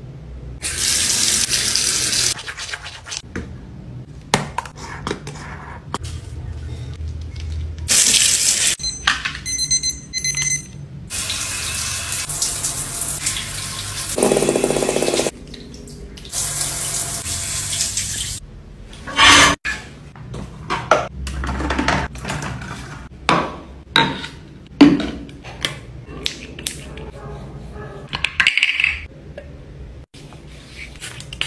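Several hissing bursts of water-like noise, each lasting one to four seconds, during the first two-thirds. After that come many light clicks, taps and rubbing sounds of hands on skin.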